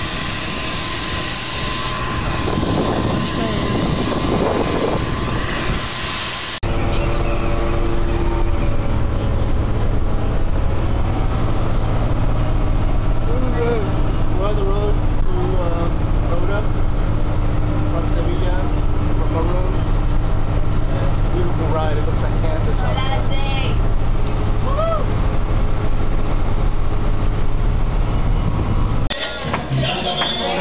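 Airliner on the apron: loud rushing engine noise with a steady whine. About six seconds in it cuts suddenly to the steady low drone of a bus engine heard from inside the cabin, with faint voices over it.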